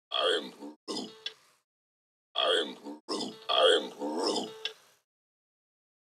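A person's voice making short vocal sounds that are not clear words, in two bursts: one at the start and a longer one from a little after two seconds in until about five seconds.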